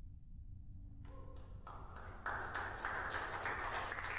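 A faint low steady hum, then from about a second in applause that starts up and grows louder toward the end, greeting the first stage's main engine cutoff and stage separation.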